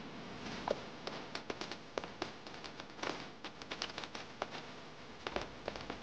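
Footsteps of several armoured soldiers walking out over a stone floor, with irregular clinks and taps of their metal armour, a few sharp ones each second.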